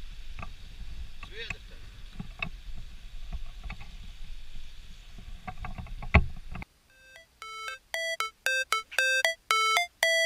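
Meat frying in a pan over a camp burner, with scattered pops and crackles over a low rumble and a loud knock about six seconds in. The sound then cuts off, and music with a repeating electronic note pattern begins.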